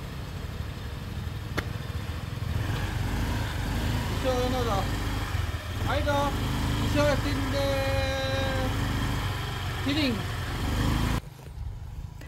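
Honda Lead scooter's engine idling with a low steady hum under a few short spoken words; the sound cuts off suddenly about a second before the end.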